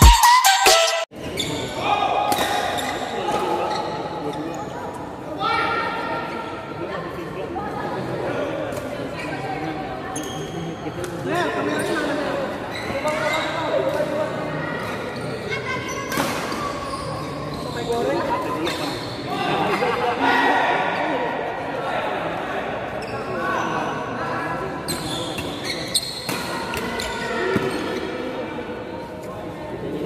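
Badminton rackets striking shuttlecocks, sharp smacks at irregular intervals that echo through a large indoor sports hall, over a steady murmur of players' and onlookers' voices.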